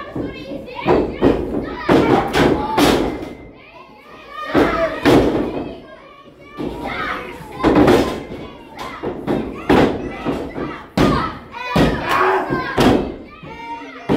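Repeated heavy thuds of wrestlers' bodies and boots hitting the canvas of a wrestling ring, a dozen or so at irregular spacing, over shouting crowd voices, children's among them.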